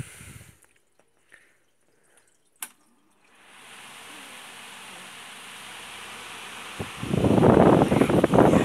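An Omega pedestal fan is switched on with a click. Its airflow hiss builds steadily as the blades spin up. About seven seconds in, the fan's air blows straight onto the microphone as a loud wind rumble.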